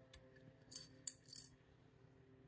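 Quiet handling sounds of a small ceramic light-up figurine: a faint click, then two short scrapes with a sharp click between them, as the plastic switch of the battery box in its base is slid on. Faint background music runs underneath.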